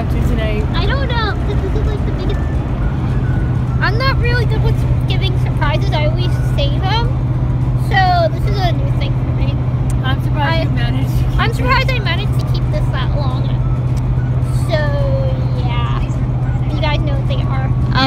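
Steady road and engine drone inside the cabin of a moving van, a constant low rumble under voices.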